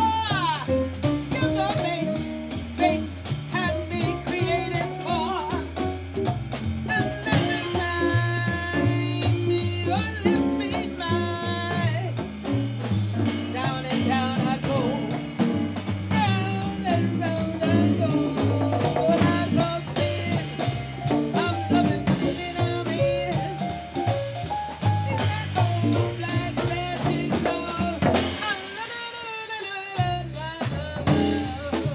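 Live jazz quartet playing: a woman sings over electric archtop guitar, a stepping bass line and a drum kit keeping steady time.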